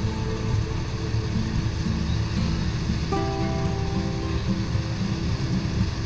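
Background music, with a few held notes clearest from about three seconds in, over a steady low rumble.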